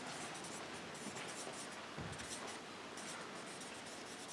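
Felt-tip marker writing on flip-chart paper: faint, irregular scratchy strokes as words are written out.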